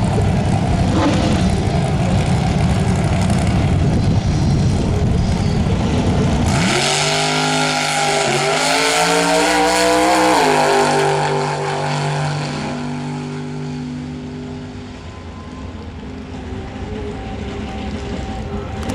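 Injected Fiat altered drag car's engine: a loud, rough rumble at the starting line, then about six and a half seconds in it launches with the pitch rising, a brief drop in pitch, and a second climb. After about ten seconds the pitch falls and the sound fades as the car runs away down the track.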